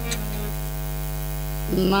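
Steady electrical mains hum from the stage sound system, a constant low buzz with no change in pitch.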